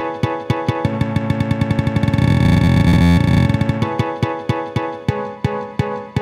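Electronic notes from the Rail Bow, a sensor-based controller driving a Max/MSP instrument: short pitched notes with sharp attacks repeat about two to three times a second, speed up into a rapid, dense run about a second in, and slow back to the steady pulse near four seconds.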